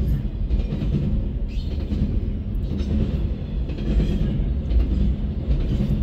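Double-stack intermodal freight train rolling past: a steady low rumble of steel wheels on rail, heard from inside a car.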